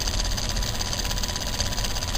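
Small homemade Newman motor running steadily, its magnet rotor spinning fast on a paper-clip shaft in paper-clip supports, giving an even, rapid mechanical buzz.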